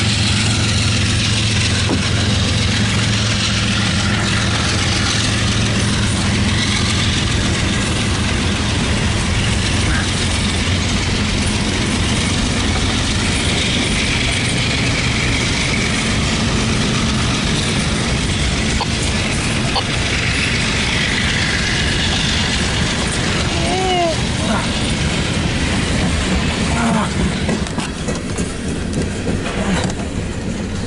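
Freight train passing: empty coal hopper cars rolling by with a steady rumble of wheels on rail, under the low drone of the head-end diesel locomotives, which fades about halfway through. Brief wheel squeals sound a few times a little after twenty seconds in.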